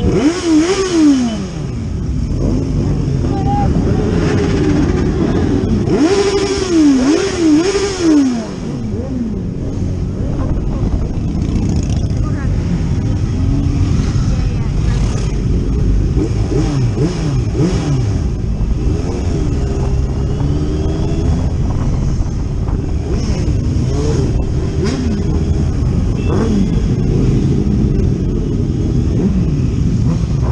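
A large group of motorcycles riding slowly together, heard from one of the bikes. Their engines run steadily, with quick throttle blips that rise and fall a few times about a second in and again around six to eight seconds in.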